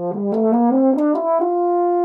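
Wagner tuba playing an ascending scale note by note, climbing about an octave and settling on a long held top note about one and a half seconds in.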